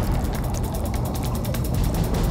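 Title-card transition sound effect: rapid, evenly spaced mechanical clicks over a low rumble.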